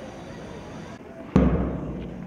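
A single sudden heavy thump with a deep boom, about a second and a half in, dying away over about half a second.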